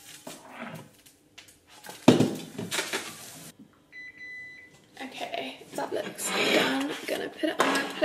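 Spatula and frying pan clattering while a cheese toastie cooks on the hob. There is one loud knock about two seconds in, and a short faint beep in a quiet moment near the middle.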